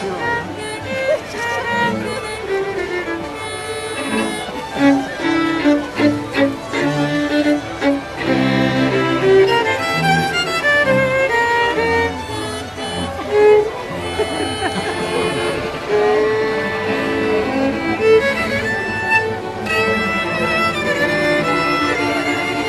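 A trio of fiddles playing a czardas together, bowed melody and harmony parts with quick-changing notes.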